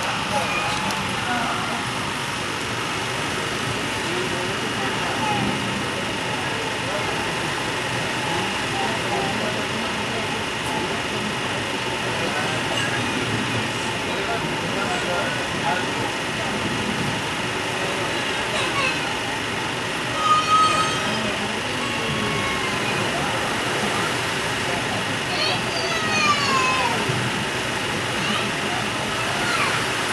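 Steady running noise inside an Indian Railways sleeper carriage, with people's voices talking in the background and a couple of louder voice bursts about two-thirds of the way through.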